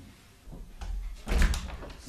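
A door being opened and shut: a few knocks and shuffles, then a heavy thump about one and a half seconds in.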